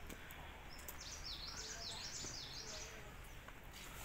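A small bird singing a quick run of high notes that slide down and up, starting about a second in and lasting about two seconds, over faint outdoor background noise.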